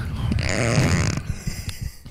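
A man laughing breathily close to a handheld microphone for about a second, trailing off, followed by a couple of small clicks.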